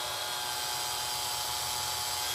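Cordless drill running steadily at one even pitch, its bit drilling into a seized, broken-off stud on the heater valve plate of a Citroen DS heater matrix.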